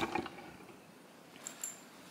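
A small corduroy toiletry bag being handled, with a few faint clicks and two small metallic clinks about a second and a half in, typical of its metal zipper pull tapping.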